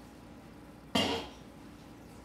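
A pan lid set down: one sharp clink about a second in, ringing briefly before it fades.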